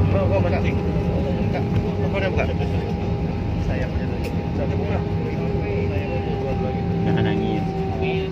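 Steady noise inside the cabin of a Citilink Airbus A320 jet rolling out on the runway just after touchdown, with faint voices in the cabin.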